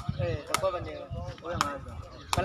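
Two sharp knocks of a woven sepak takraw ball being struck, about a second apart, over men's voices talking.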